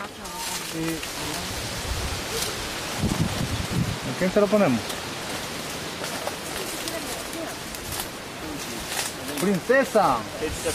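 Coffee shrub leaves and branches rustling as they are pushed through and handled, with a scatter of sharp clicks and snaps, and short bursts of voices.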